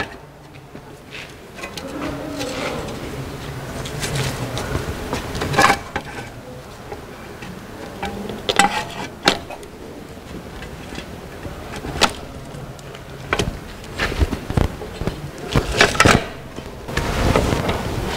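Metal clinks, knocks and scraping as a clutch pressure plate, with the clutch disc behind it, is handled and fitted onto an engine's flywheel. The knocks come singly at irregular intervals, over a low steady hum.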